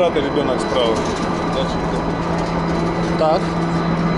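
Chairlift drive machinery at the boarding station running with a steady low hum, with brief voices over it.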